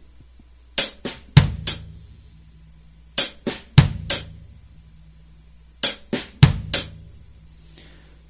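Drum kit played slowly, one piece at a time, in a linear funk figure: hi-hat, a soft ghost note on the snare head, bass drum, hi-hat. The four-stroke figure is played three times with short pauses between.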